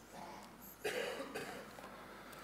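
A person coughing once, briefly and fairly quietly, a little under a second in.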